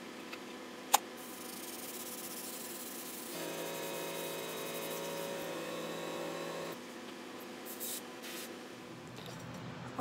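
Aerosol spray-paint can spraying onto canvas: a sharp click about a second in, then a hiss with a steady pitched tone under it for a few seconds in the middle, and two short bursts of spray near the end.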